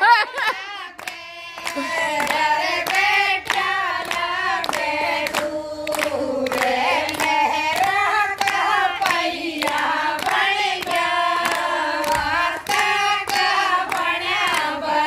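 A group of women singing a song together, keeping time with steady hand claps. The singing and clapping pick up after a short lull about a second in.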